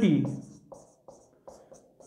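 Marker pen writing on a whiteboard: a few faint, short strokes.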